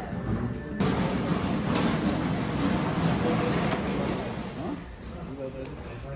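Background chatter of many voices with a noisy room haze, starting abruptly about a second in and thinning out near the end.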